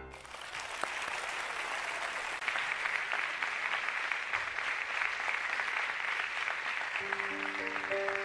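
Concert audience applauding at the end of a song, steady throughout. Near the end, an accompanying instrument starts holding sustained notes under the clapping.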